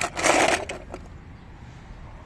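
A short burst of crunching and crackling, about half a second long, near the start, followed by a steady low outdoor background rumble.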